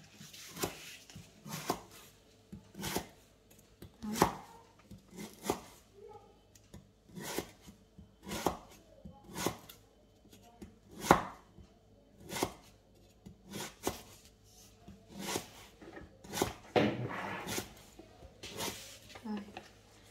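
A cleaver slicing lemongrass stalks into thin rings on a wooden chopping board: sharp knocks of the blade on the wood, irregular, about one a second.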